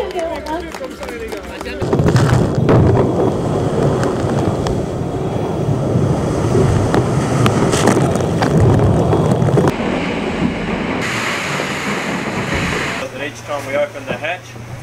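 Wind and seawater spray rushing over the deck of an ocean racing yacht sailing fast, a loud, dense rush of noise with wind buffeting the microphone. Near the end it gives way to a steady low hum.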